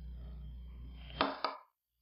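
Clear plastic cups handled, giving two quick light clicks over a low hum, then the sound cuts out abruptly.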